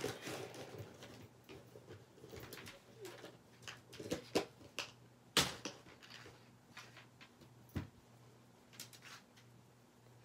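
A baby wipe rubbed across a craft mat to wipe off wet gesso. Soft wiping with a few sharp taps and knocks on the work surface; the loudest comes about halfway through.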